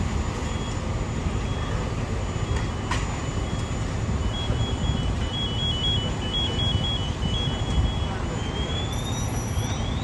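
Fire engine running with a steady low rumble. From about four seconds in an electronic alarm beeps in two alternating high tones, turning into short rising chirps near the end.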